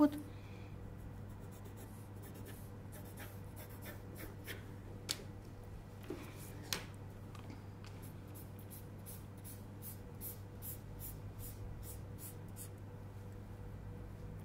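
Pencil drawing a line on pattern paper: a long run of short, light scratching strokes, with a couple of sharper ticks midway.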